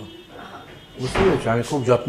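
A brief pause, then a man speaking from about a second in.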